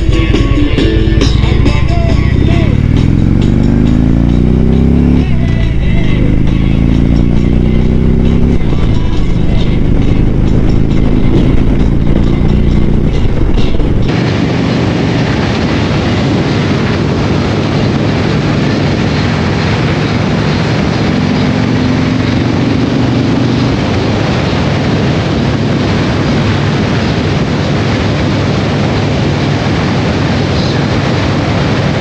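Harley-Davidson touring motorcycle accelerating away through the gears: the engine note rises, drops at a shift about 5 s in and again at about 8 s, then holds in a higher gear. From about halfway the bike cruises at a steady speed, largely drowned by loud wind noise on the microphone.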